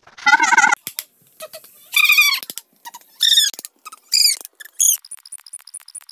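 Cartoon-style sound effect: a series of five short, warbling, bird-like squawks, each pitched higher than the one before, followed near the end by a rapid run of high electronic blips.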